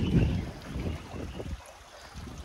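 Wind buffeting the microphone: an uneven low rumble that dies away near the end.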